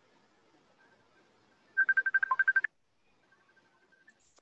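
A short burst of rapid electronic beeping near the middle: about a dozen quick beeps on one steady high pitch, lasting under a second, in otherwise near silence.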